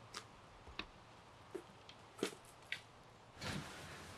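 Faint footsteps on dry leaf litter and pine needles, about five soft crackling steps at a walking pace. Near the end they give way to a faint steady room hiss.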